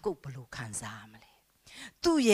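A woman's voice speaking quietly into a microphone, trailing off about halfway through into a brief pause.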